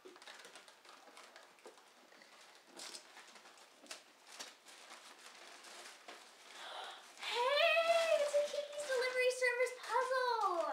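Wrapping paper rustling and tearing as small gift boxes are unwrapped, with soft scattered crackles. About seven seconds in, a long, high-pitched voice rises and falls, then holds a steady note.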